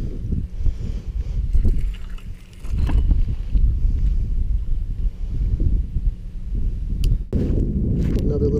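Wind buffeting the microphone, a loud, low, uneven rumble, with a few brief clicks.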